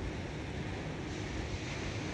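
Wind blowing across the microphone: a steady low rumble with hiss.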